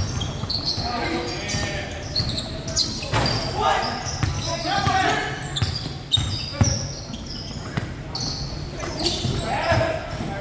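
Basketball dribbled on a hardwood gym court, bouncing several times at an uneven pace, the thuds echoing in the large hall.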